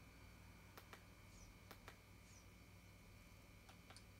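Near silence: faint room hum with three pairs of faint short clicks, about a second apart and again near the end, from buttons being pressed on a media-box remote control.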